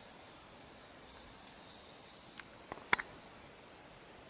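A high, steady insect trill that stops abruptly about two and a half seconds in, followed by a few sharp clicks near the three-second mark.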